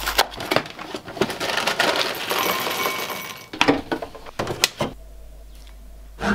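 Clicks, knocks and rustling of objects being handled, with a denser stretch of rustling in the middle.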